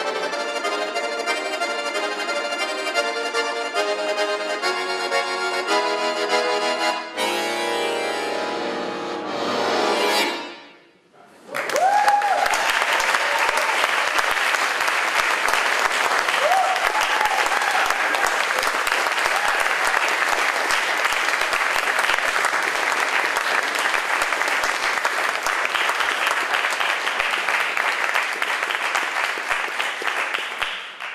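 Chromatic button accordion playing a rapid passage that ends about ten seconds in on a held chord with a low bass note. After a brief gap, an audience applauds steadily for the rest of the time, with a couple of shouted whoops early in the applause.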